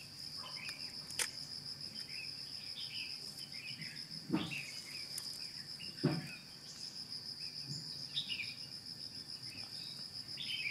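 Steady chorus of insects, a continuous high pulsing trill, with scattered bird chirps. Two dull thumps come about four and six seconds in, and a sharp click just over a second in.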